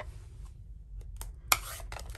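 Light handling of a stamp ink pad's plastic case as it is lifted off a craft mat: a few faint ticks, then one sharp click about one and a half seconds in.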